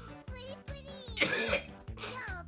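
A man coughs once, harshly, about a second in, while chewing a candy he finds horrible. Background music with a steady beat runs underneath.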